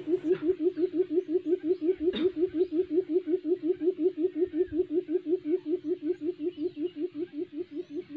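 Barred buttonquail giving its booming call: a long, unbroken run of low hoots, about five or six a second, each sliding slightly up in pitch and fading a little toward the end. A single faint click about two seconds in.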